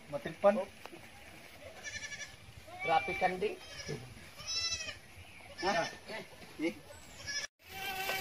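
Goats bleating, a few separate calls one after another, some of them high-pitched.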